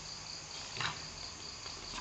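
Faint steady chirring of insects, such as crickets, in the background, with a brief soft sound a little under a second in.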